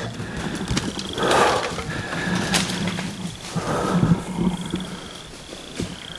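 Black bear, just hit by a bowhunter's broadhead arrow, growling and bawling in rough bursts, about a second in and again a few seconds later: the calls of a mortally hit bear.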